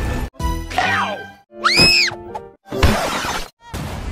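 Cartoon soundtrack excerpts spliced back to back, each about a second long with a short silent break between them: music and sound effects. Near the middle a sliding tone rises and falls, and the later pieces are noisier, with a sharp hit just before 3 seconds.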